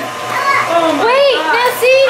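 High-pitched children's voices chattering, over a faint steady low hum from an electric stand mixer driving a pasta-roller attachment.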